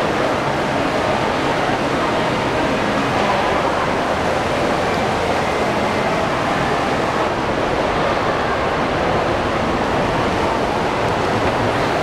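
Steady din of a large, echoing indoor shopping-mall atrium: a continuous wash of crowd hubbub and distant voices with no single sound standing out.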